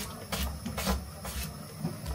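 Knife chopping vegetables on a wooden cutting board, short strokes about two a second, over low rumble from the camera being moved.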